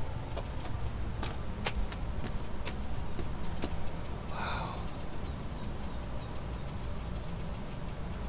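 Outdoor insects trilling steadily in a high, thin, evenly pulsing tone, with a few faint clicks during the first half.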